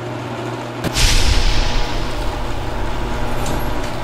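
Synthesized sound-design effect from a channel ident: a steady low drone with a sudden swooshing hit about a second in that fades out slowly.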